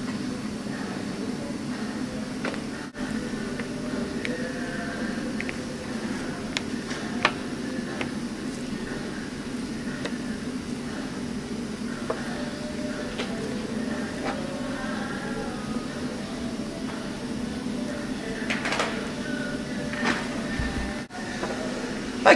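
A hand laminating roller worked over resin-wet fibreglass mat on a pipe, giving faint scattered clicks and scrapes over a steady low workshop hum.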